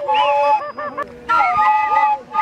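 Several flutes playing a dance tune together, their held notes decorated with quick up-and-down pitch bends; the phrase breaks off briefly in the middle and then starts again.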